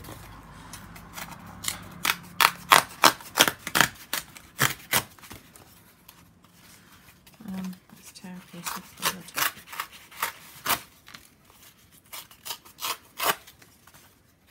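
Corrugated cardboard being torn by hand, strips ripped and peeled from its edge: a quick run of sharp rips from about two to four seconds in, then shorter clusters of rips later on.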